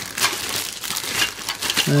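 Clear plastic bags of model-kit parts crinkling and crackling as they are handled and swapped in the hands.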